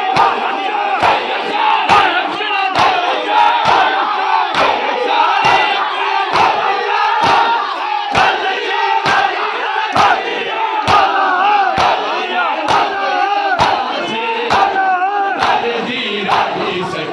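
A crowd of men chanting a noha lament in unison while beating their bare chests with open palms (hand matam). The slaps land together in a steady beat, about one strong stroke a second with lighter ones between.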